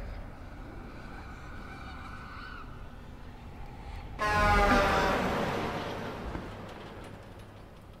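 A loud scream from the TV episode's soundtrack, starting suddenly about four seconds in and fading away over the next few seconds, after faint eerie music tones.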